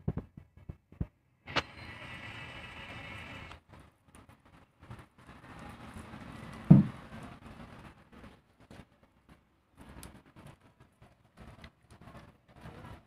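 A puppy licking and chewing a slice of mango, heard as irregular short smacking clicks. There is one loud dull thump about seven seconds in.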